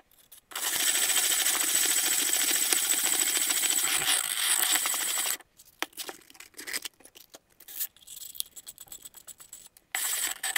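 Rim of a glass tumbler being rubbed on abrasive paper, dry: a loud, steady, gritty scraping for about five seconds. Then a few light clicks of handling, and a short burst of scraping again right at the end.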